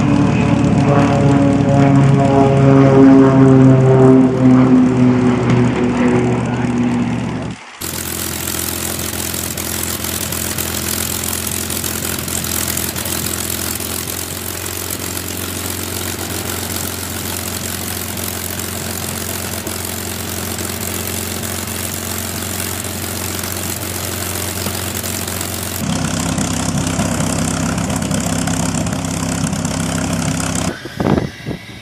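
P-51D Mustang's Packard Merlin V-12 engine running as the plane taxis past, its note slowly falling in pitch; it is the loudest part. About eight seconds in, the sound cuts to a steady engine and airflow drone heard from inside the cockpit during the takeoff roll. Near the end it cuts back to the engine idling at low power outside.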